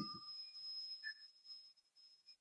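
Near silence: faint room tone with a thin, steady high-pitched tone that fades out about a second and a half in.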